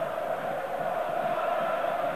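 Football stadium crowd chanting, a steady mass of voices.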